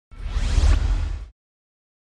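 A whoosh sound effect for a logo reveal: a deep rumble with a rising sweep above it, lasting about a second before it cuts off suddenly.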